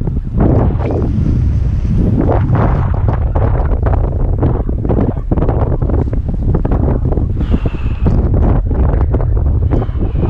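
Strong wind buffeting the microphone: a loud, fluttering low rumble that gusts and wavers, with the wash of sea surf underneath.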